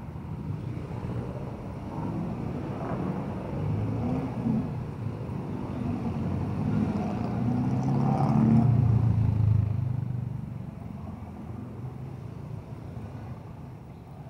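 City street traffic: engines of passing motor vehicles, one passing close and loudest a little past the middle, then fading away.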